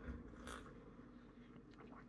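Near silence: quiet room tone, with one faint, short sip from a coffee mug about half a second in.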